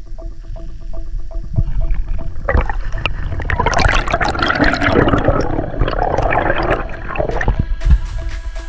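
Underwater air bubbles rising past the microphone, a dense bubbling and gurgling from about two and a half seconds in until near the end, over background music.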